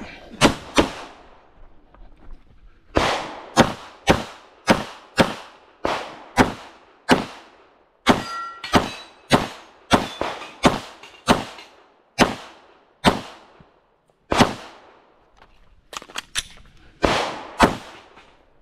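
Glock 17 9mm pistol fired in a long string of about two dozen shots. A quick pair comes first, then steady shots about every half second with short pauses, and a fast burst of several near the end.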